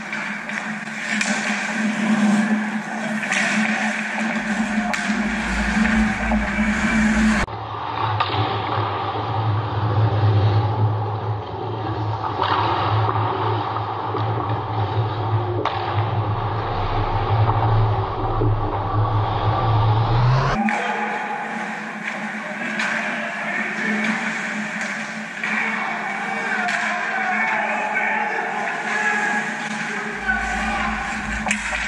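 Ice hockey play heard from beside the net: skates scraping the ice and clicks of sticks and puck over a steady low hum of the rink. From about a quarter of the way in to about two-thirds, the same rink sound is played back slowed down and lower in pitch for an instant replay, then returns to normal speed.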